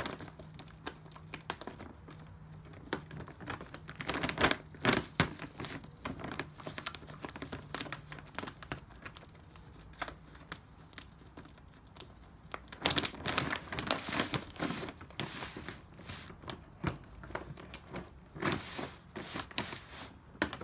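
Plastic bag of dry dog food crinkling and rustling in irregular bursts as an 8-week-old bullmastiff puppy bites and tugs at its corner. The busiest stretches come a few seconds in and again in the second half.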